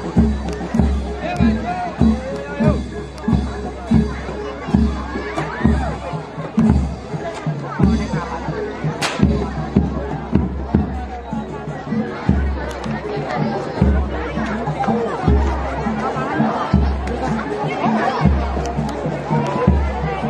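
Jaranan (reog) troupe music driven by a deep drum beating about twice a second, under crowd chatter and shouting. A single sharp crack stands out about nine seconds in.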